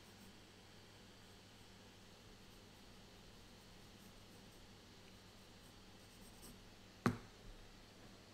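Faint scratching of a pencil sketching on paper over a steady low hum, then one sharp knock near the end, with a smaller one just after.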